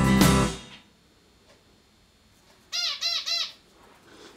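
Background rock music fades out in the first second. After a short near-silent pause, a pet bird gives three quick chirps, each rising and falling in pitch.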